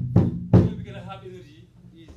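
A djembe and dundun drum group: three heavy, low drum strokes about a third of a second apart close off the rhythm. They are followed by a short vocal call that fades out, leaving a brief gap.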